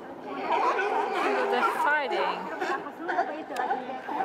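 Chatter of many overlapping voices, with one long falling call about halfway through.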